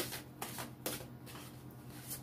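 Cards being handled and shuffled by hand: a few short, soft snaps of card edges over a faint steady hum.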